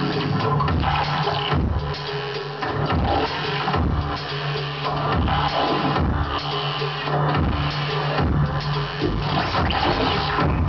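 Live electronic music played from laptops and electronics: a held low bass note under recurring low beats, with dense noisy textures and a few gliding sweeps on top.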